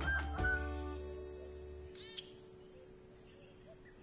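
Closing background music ending on a held chord that fades away, its bass dropping out about two seconds in. A short bird call comes about halfway, with faint chirps near the end.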